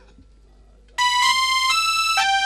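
Electronic keyboard music starts abruptly about a second in, with bright held chords that change near the end.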